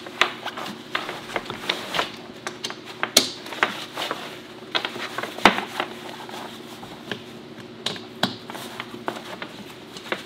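Snap fasteners on camper tent fabric being pressed shut by hand, irregular sharp clicks one after another amid rustling of heavy canvas, over a steady low hum.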